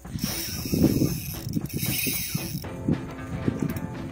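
Spinning reel's drag clicking rapidly as a hooked redfish runs and pulls line off against the bent rod. Music comes in over it near the end.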